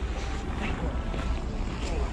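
Wind buffeting the phone's microphone outdoors: a steady low rumble.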